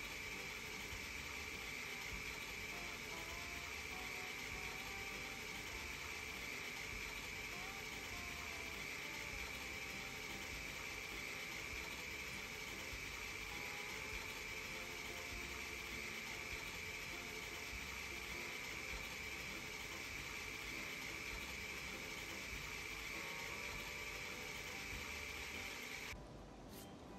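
Steady hiss with a constant high-pitched whine running unchanged, then cutting off suddenly at the end.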